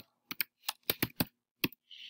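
Computer keyboard typing: about seven separate keystrokes with short gaps between them, typing out a short line of code.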